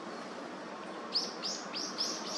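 A bird calling in a quick run of short, sharp, high notes, about three a second, starting about a second in, over a steady background hiss.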